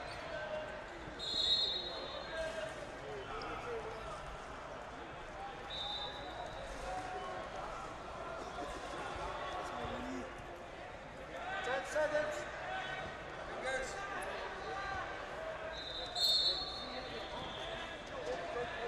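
Busy wrestling-tournament hall ambience: many overlapping voices and shouts echoing in a large hall. Short high whistle blasts sound about a second in, about six seconds in and near the end.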